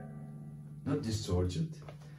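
Electric guitar played through a Fender Hot Rod Deluxe tube amp during a bias check, a short phrase of notes about a second in, over a steady low amp hum.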